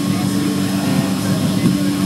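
A steady, low mechanical drone holding two even tones, with faint voices in the background.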